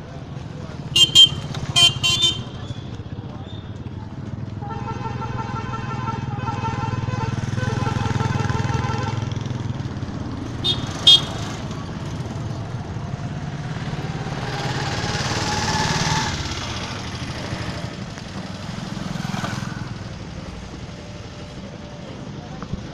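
Street traffic with motorcycles: a steady low engine rumble, a few short horn toots about a second in and again around eleven seconds, a longer pitched horn from about five to nine seconds, and an engine pitch rising around fifteen seconds as a vehicle speeds up.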